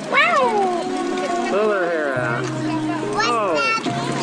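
A young child's high-pitched vocal squeals, three rising-and-falling cries, over background music with long held notes.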